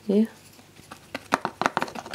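Paintbrush dabbing and scraping acrylic paint against a clear plastic palette lid while mixing colours: a quick run of small taps and scratches starting about a second in.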